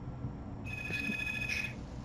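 A single steady electronic alert tone, about a second long, starting about half a second in, over a faint low hum.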